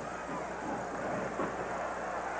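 Steady noise of a large stadium crowd at a college football game, a dense murmur with no single voice standing out.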